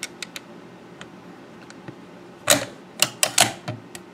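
Metal clicks and rattles of a Lee-Enfield rifle's bolt being handled: a few light clicks at first, then a quick run of sharper clicks in the last second and a half.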